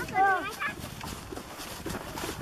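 A horse pulling a cart along a dirt track: faint, irregular hoof clops and cart noise, after a brief voice at the start.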